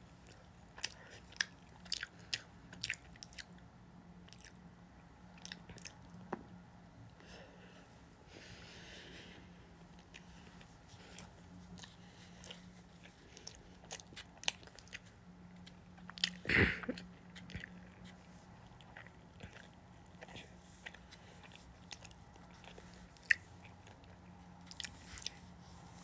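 Close-up chewing of a mouthful of fried rice, with frequent short wet mouth clicks and smacks, thickest in the first few seconds. One louder, longer mouth sound comes about two-thirds of the way through, and a faint steady hum runs underneath.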